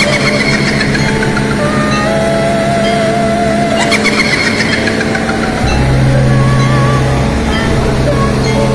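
Hitachi Zaxis 200 excavator's diesel engine running steadily, growing louder about six seconds in as it works to climb onto the truck deck, with background music playing over it.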